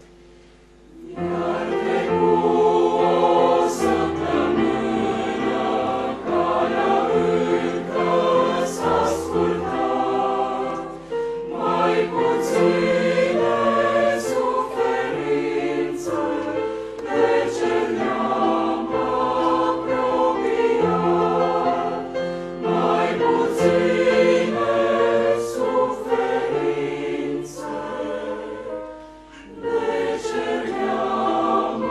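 Mixed church choir of men and women singing a sacred choral piece in parts. The singing comes in about a second in and breaks off briefly near the end before carrying on.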